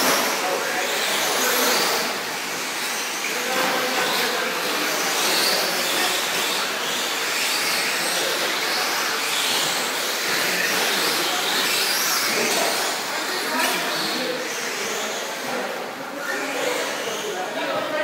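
Steady din of 1/10-scale electric 4WD short-course RC trucks running on an indoor dirt track, with people talking in the background.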